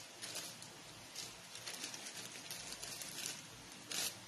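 Faint crinkling and rustling of a thin plastic zip-top bag being handled, in short scattered rustles.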